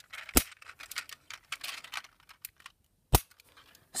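A toy pickup truck being handled by hand: small plastic clicks, taps and rustles, with two sharp clicks, one about half a second in and one about three seconds in.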